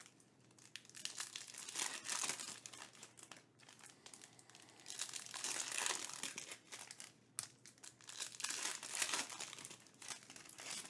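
Foil trading-card pack wrapper crinkling in irregular bursts as it is handled and torn open, with a sharp click about seven seconds in.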